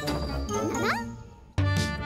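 Cartoon sound effects: chime-like tinkling with a quick rising whistle-like glide, fading away. About a second and a half in, music with a strong steady beat starts abruptly.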